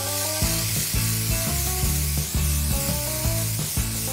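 Background music with a stepping melody and bass notes, over the steady hiss of an aerosol can of blue hair-colour spray being sprayed onto hair.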